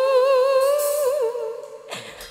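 A woman singing a Khmer sentimental song into a microphone, holding one long wavering note that fades out near the end of the phrase.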